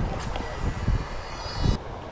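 Fishing reel being cranked, a faint high whine that stops abruptly near the end, over gusty wind rumble on the microphone.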